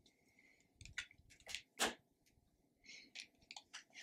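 Tarot cards being handled and set down on a table: faint, scattered taps and clicks, the loudest a little under two seconds in.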